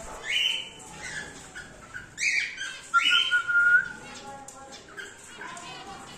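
Cockatiels calling: a harsh screech about a third of a second in, another a little after two seconds, and a longer call around three seconds with a held whistle-like note, with softer chirps in between.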